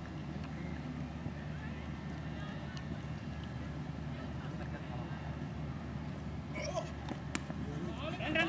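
Outdoor field sound of faint, indistinct voices over a steady low rumble, with one sharp click near the end.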